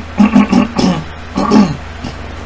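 A man's voice in two short bursts, the first about a quarter of a second in and the second at about a second and a half, with no clear words, over a steady low hum.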